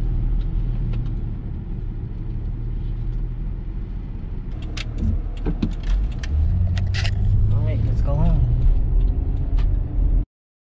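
Low, steady rumble of a car, which fills out about six seconds in into engine and road noise heard inside the cabin. Sharp clicks and rattles come between about five and seven and a half seconds in, and a brief voice follows around eight seconds.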